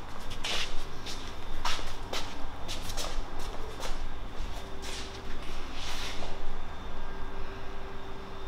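Shuffling footsteps and light handling noises, with soft knocks and rustles, as a car windscreen is carried and lowered onto the windscreen frame. A faint steady hum comes in about halfway through.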